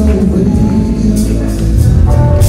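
Live jazz-funk band playing, with electric bass and drums over a heavy low end and cymbal strikes cutting through.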